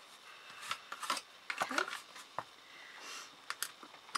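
Faint rustling and a few light clicks of a damp baby wipe being rubbed along freshly glued MDF joints to wipe away excess glue.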